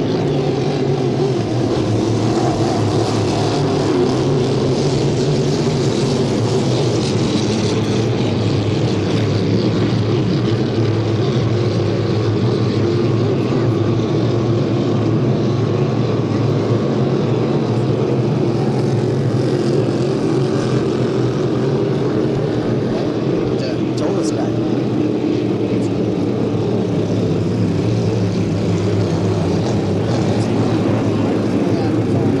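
Several 350-class inboard racing hydroplanes running at speed, their V8 engines a loud, steady drone with several engine notes overlapping.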